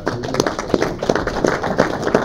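Applause from a small group: many hands clapping, a dense uneven patter of claps.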